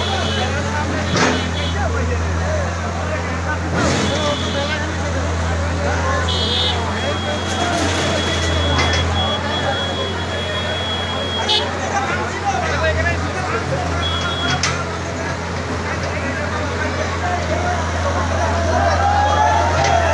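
Crowd chatter over the steady low drone of a CAT excavator's diesel engine running during demolition, with a few sharp knocks.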